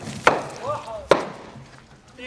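Two sharp whacks about a second apart, blows struck by guards in a staged prison beating, with a short shout between them.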